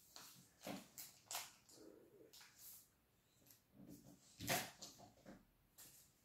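Faint crinkling of a thin plastic card wrapper being handled and pulled off trading cards: a scatter of short, sharp crackles, the loudest about four and a half seconds in.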